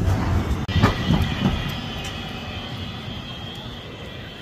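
Tram passing on street rails, its wheel and rail noise fading as it moves away, with a sharp clack about a second in and a thin high-pitched wheel squeal.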